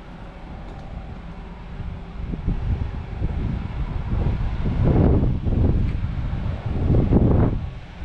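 Wind buffeting the microphone outdoors: an uneven low rumble that builds from about two seconds in, with strong gusts around the middle and again near the end.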